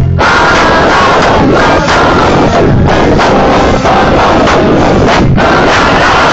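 A live band playing loud, with shouted group vocals over it. The recording sits at full scale and sounds overloaded, with brief drops near the start and about five seconds in. It is a poor live recording of a gig.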